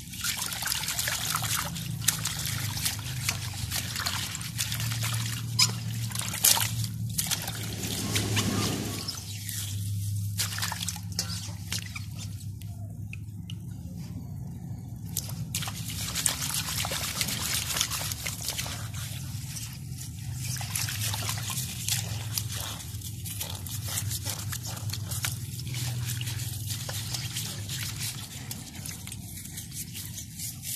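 Water splashing and sloshing in a steel basin as hands scrub snakes with a handful of grass, in irregular bursts with a quieter spell about halfway through. A steady low hum lies underneath.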